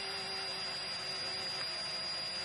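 Cordless drill running at a steady speed, its bit boring a hole through a large natural wine cork, with an even, high whine over a lower motor hum.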